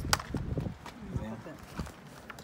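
Close handling noise: a sharp click just after the start, then a few soft knocks and rustling as hollow confetti eggs (cascarones) go into a fuzzy plush bag.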